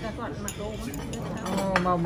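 Dishes, glasses and cutlery clinking on a table during a meal, with a few sharp clinks, more near the end, under people talking.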